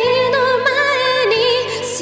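A woman sings a slow Japanese ballad into a handheld microphone, holding notes with vibrato, over soft, steady instrumental accompaniment.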